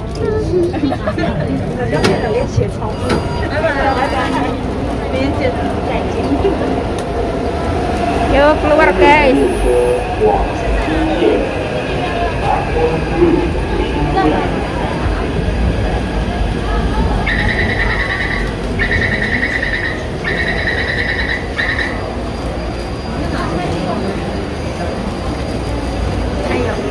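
Taipei MRT train and station: crowd chatter over a low train rumble, with an electronic door-closing warning tone sounding three times in a row, each about a second and a half long, about two-thirds of the way through.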